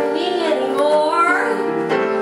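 A woman singing into a microphone, accompanied by an upright piano in a live performance. Her melody rises about a second in.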